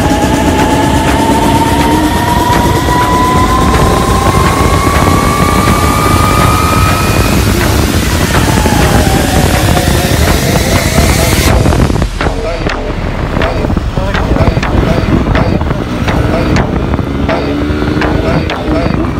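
Bajaj Pulsar NS200 single-cylinder engine under way, its pitch rising steadily for several seconds as the bike accelerates, under loud wind rush on the microphone. About eleven seconds in the wind hiss drops away suddenly, leaving the engine and a rapid, irregular flutter of cloth flags flapping on the handlebars.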